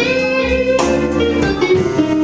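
Live blues band playing, with an electric guitar phrase between sung lines over the drums.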